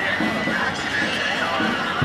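People's voices, with a high wavering call running through the first second and a half.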